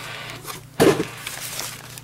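Paper and plastic bubble wrap rustling and crinkling as a packing slip and note cards are handled and pulled from a shipping box, with one short, louder sound a little under a second in.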